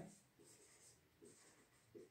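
Marker pen writing on a whiteboard: a few faint, short strokes with near silence between them.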